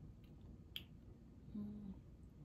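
A faint, quiet room with one sharp click about three-quarters of a second in, then a short low closed-mouth hum, an appreciative 'mm', near the end as someone tastes ice cream.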